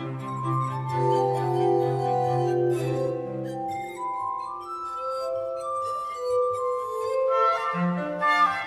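Glass harmonica playing a slow melody of pure, sustained, glassy tones. A cello holds a low note beneath it for the first three and a half seconds.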